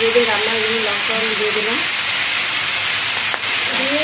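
Small pabda fish and vegetables frying in hot oil in a karai (wok), with a steady loud sizzle.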